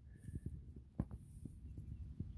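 Faint low thumps and rumble from a hand-held phone being moved along a tape measure, with a single click about a second in.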